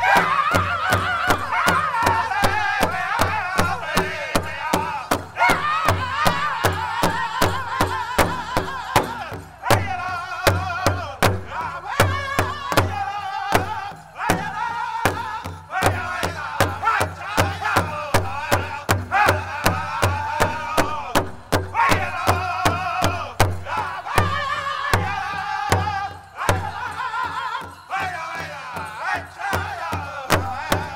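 Pow wow drum group singing in unison over a steady, fast beat on a large shared drum, with a few brief breaks in the beat.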